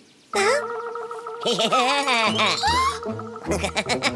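Cartoon vocal sound effect with a warbling, wavering pitch over a held note, followed near the end by a children's song starting with bass notes and a beat.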